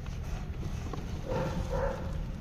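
A short animal call with a few overtones, lasting about half a second and beginning over a second in, over a steady low rumble.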